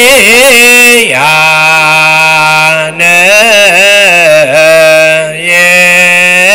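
A single voice chanting loudly in long held notes with wavering ornaments, dropping to a lower pitch about a second in.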